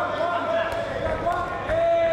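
A few sharp thuds from a K1 kickboxing bout in the ring, heard over shouted voices from the corners and crowd.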